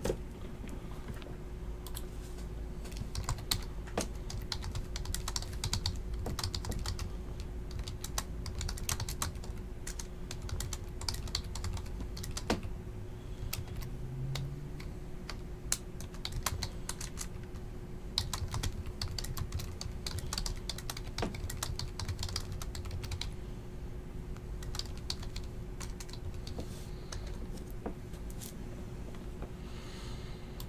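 Typing on a computer keyboard: irregular runs of key clicks throughout, over a faint steady hum.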